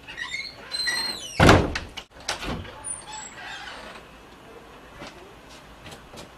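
A door squeaking with a high, gliding creak, then slamming shut loudly about a second and a half in, with a softer thump about a second later.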